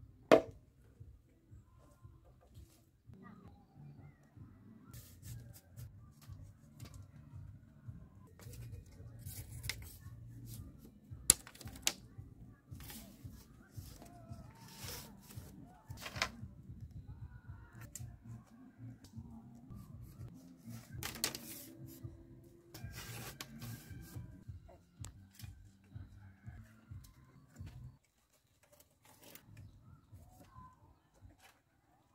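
Bamboo being worked by hand: scattered sharp clacks and knocks of a machete on bamboo and of split bamboo strips being handled and set in place, the loudest about a second in and again about eleven seconds in, over a faint steady low hum.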